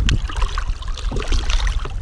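Water splashing and sloshing as a hand releases a large redfish at the side of a boat and the fish kicks away, over a steady low rumble.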